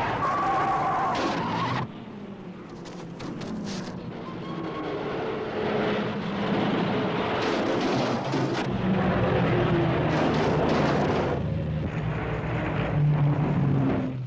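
1930s open-wheel racing car engines running at speed on the track, the sound dropping suddenly about two seconds in and then building again as cars run past.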